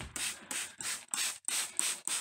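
Hand spray bottle squirting water in quick, even hisses, about five a second, wetting down the paper bedding of a worm bin to keep it moist.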